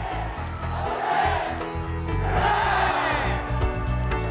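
Background music with a steady beat, over which a large group of voices shouts together in two swelling surges, the first about a second in and the second, longer one from about two seconds in.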